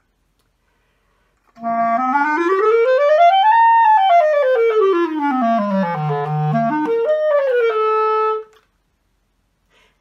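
B-flat clarinet played solo: a fast scale run climbs about two octaves, comes back down to the instrument's lowest notes, then jumps up and ends on a held note.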